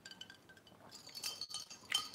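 Glass tumblers clinking lightly a few times, each clink with a short, faint ring.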